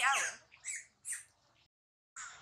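Macaques squealing during a fight: a loud wavering shriek, then two short, high, shrill squeals. The sound cuts off dead just before the end.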